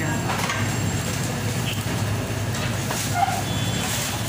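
Steady low mechanical hum of a busy food counter, with faint voices of a crowd behind it.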